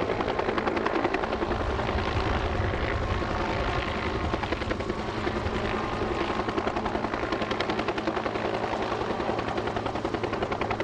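Bell UH-1 'Huey'-type helicopter hovering overhead, its main rotor beating in a fast, even pulse over the turbine's steady running.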